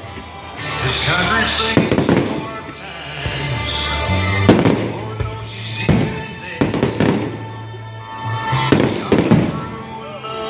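Aerial fireworks shells bursting in a string of about eight sharp bangs, with music playing under them throughout.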